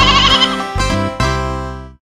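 Closing chords of an instrumental children's song, with a quavering cartoon sheep bleat near the start. The music fades and then stops abruptly just before the end.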